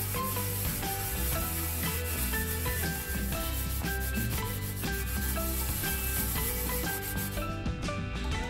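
A green scouring pad scrubbing burnt-on residue off the bottom of a stainless steel pot coated in detergent. It is a steady rasping rub that stops near the end, with background music underneath.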